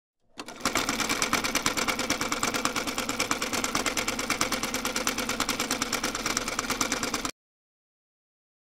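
Mechanical clattering: a fast, even run of clicks that starts within the first second and cuts off suddenly about a second before the end.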